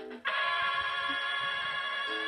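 A single held musical note with several overtones, starting about a quarter second in and sounding steadily throughout.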